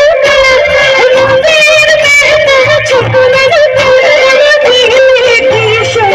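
Live band music: a woman singing into a microphone in long, wavering notes over keyboards and electric guitar.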